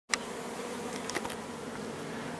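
Honeybees buzzing on the comb of an open top bar hive: a steady, even hum of many bees. A sharp click right at the start and a few faint ticks about a second in.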